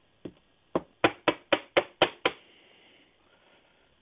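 A plastic-sleeved trading card tapped against the tabletop: two single taps, then six quick, even taps at about four a second.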